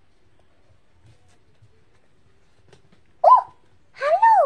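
Mostly quiet, then near the end a single short, high-pitched vocal squeak from a child, rising and then falling in pitch.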